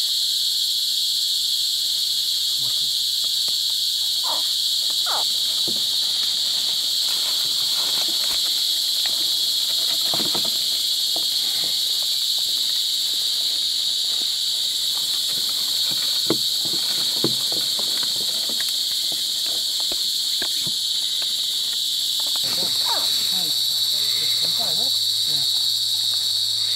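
Steady, dense chorus of night insects, a constant high-pitched buzzing, with faint scattered rustles and ticks beneath it.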